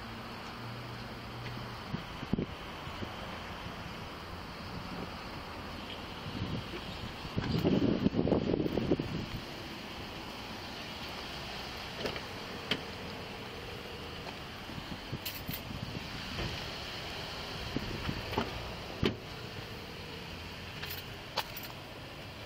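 Handling noise from a body-worn camera as its wearer moves and handles things: a steady background hiss with scattered small clicks and jingles of gear. About eight seconds in there is a short, louder burst of rubbing or wind on the microphone.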